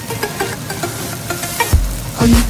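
Sliced chicken breast sizzling in a frying pan, with background music whose bass beat comes back near the end.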